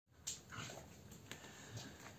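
Faint whimpering from a German Shepherd-type dog, with a sharp click about a quarter second in and another a little after a second.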